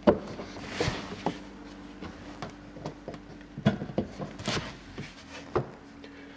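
A handful of knocks and clicks from hands handling the boat's deck fittings as the livewell lid is opened, the loudest right at the start, over a faint steady hum.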